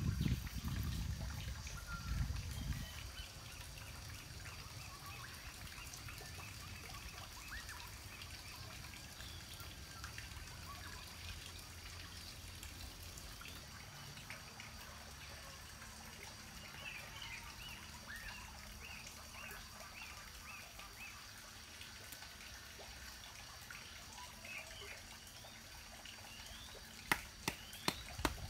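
Wet clay and water being worked by hand: soft wet handling sounds and light dribbles in the first few seconds, then a faint steady outdoor background with scattered bird chirps.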